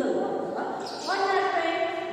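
Only speech: a woman talking, lecturing.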